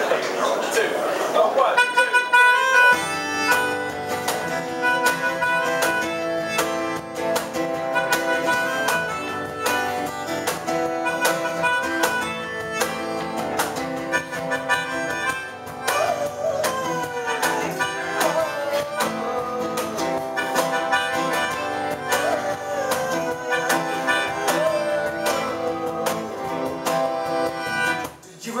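A song's instrumental intro played live: a melodica plays the melody over strummed acoustic guitar, coming in about two seconds in.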